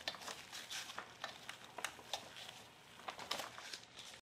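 Faint handling noise: soft, irregular clicks and rustles of gloved hands on a gas trimmer's plastic engine housing and spark tester lead.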